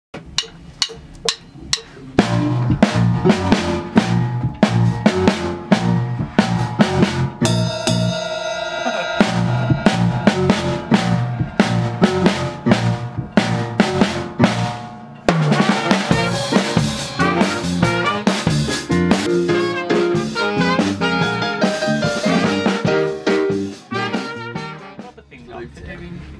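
A band with a drum kit and a horn section of saxophones and trumpet rehearsing a song. A few clicks come before the band starts about two seconds in, the horns hold a long chord around eight seconds in, and the music fades out near the end.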